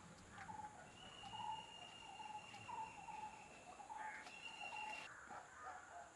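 Faint outdoor birdsong: a bird repeating short calls about twice a second, with a long steady high note through the middle, over a constant high insect hiss.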